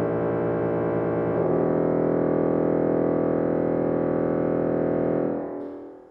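Pipe organ holding loud sustained chords, moving to a new chord about a second and a half in, then released just after five seconds, the sound dying away in the church's reverberation.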